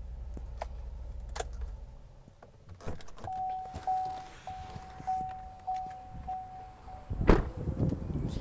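A low steady hum in the 2014 Chevrolet Silverado's cab stops about two seconds in, followed by a few clicks. The truck's warning chime then dings over and over, a little under twice a second, until a heavy thump of the door shutting cuts it off near the end.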